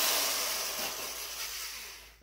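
Small power drill whirring as it bores out the plastic line hole of a speargun reel, the sound dying away toward the end as the drilling stops.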